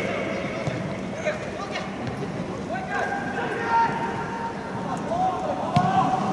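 Football players shouting and calling to one another on the pitch, with longer held calls about halfway through and near the end. A few sharp knocks come through as well.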